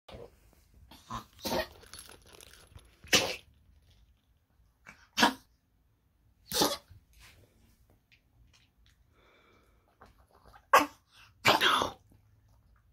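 Small long-haired dog coughing in short, sharp bursts, irregularly spaced a second or several seconds apart, the last one longer.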